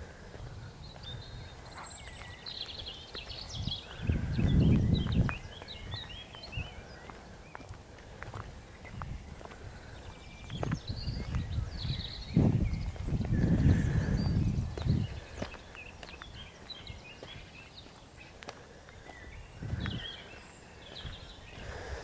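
Outdoor ambience: birds chirping and trilling, a patter of footsteps on a path, and low rumbling gusts of wind on the microphone, loudest about four seconds in and again from about twelve to fifteen seconds in.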